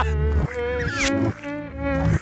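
Wordless cartoon character vocalizing: a buzzy, nasal voice in a few short calls whose pitch wavers up and down, over a steady low hum.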